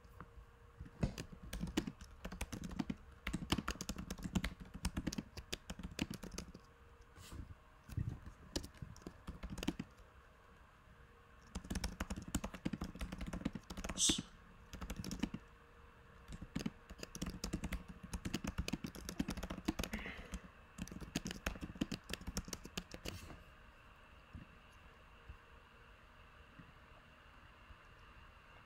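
Typing on a computer keyboard: runs of rapid key clicks in three bursts, with one sharper click about halfway, stopping some four seconds before the end.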